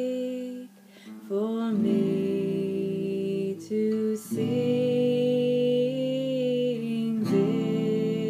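A woman singing long held notes to acoustic guitar accompaniment, the voice changing pitch a few times with short breaks between phrases.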